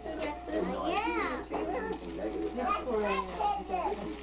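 Children and adults chattering over one another, with one child's high-pitched exclamation that rises and falls about a second in.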